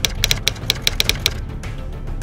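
Typewriter keys clacking in a quick run, about eight strokes a second, stopping about a second and a half in, as a typing sound effect, with background music underneath.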